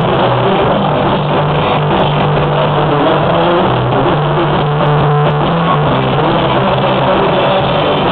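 Amateur blues-rock band playing an instrumental passage of the song: electric guitars, bass and drum kit together, loud and dense, with a walking run of low bass notes.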